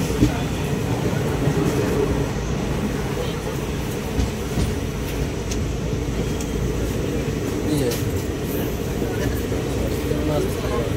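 Passenger train running along the line, a steady low rumble heard from inside the coach, with a few short clicks.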